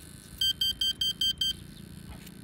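About seven short, identical high-pitched electronic beeps in quick succession from an ALZRC Devil 380 electric RC helicopter's electronics, powering up just after its flight battery is connected.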